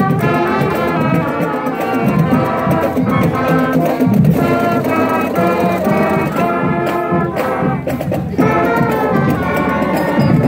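Marching band playing a tune on the move, led by trumpets and trombones with woodwinds and low brass beneath.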